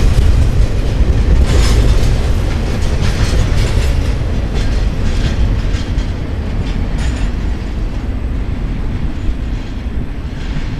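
Double-stack intermodal train's well cars rolling past, a heavy low rumble with scattered clicks and clatter from the wheels on the rails, growing fainter over the last few seconds as the train moves away.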